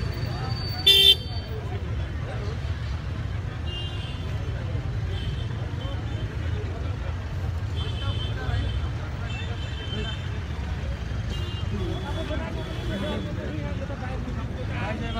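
Crowd voices and a steady low rumble around a slow-moving car, with one short, loud car-horn toot about a second in.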